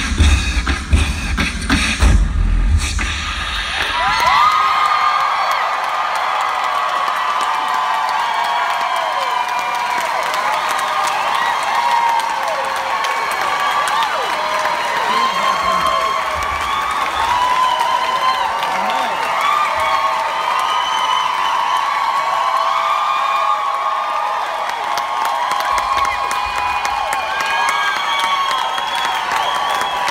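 Beatboxed drum solo with deep bass kicks for about the first four seconds, then a crowd cheering and screaming, a dense mass of high voices, for the rest.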